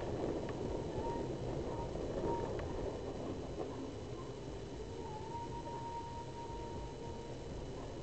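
Steady road and engine noise of a car driving slowly, as picked up by a dashcam inside the cabin, with a few faint short whistling tones over it.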